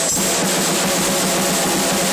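Ludwig drum kit being played, with a dense wash of cymbals over the drum hits at a steady loud level.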